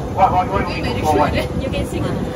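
Short bits of indistinct talking over steady wind noise on the microphone, with a faint steady hum at one pitch throughout.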